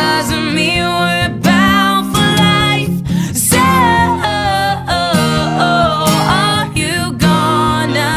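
A woman singing a pop song with long, held and gliding notes over a strummed acoustic guitar.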